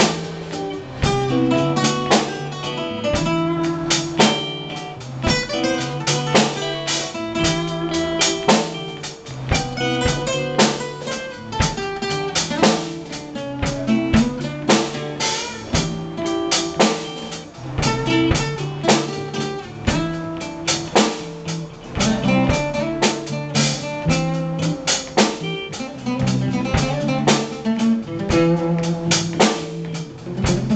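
A live band plays: two acoustic guitars and a drum kit, with a guitar solo over strummed chords and a steady drum beat.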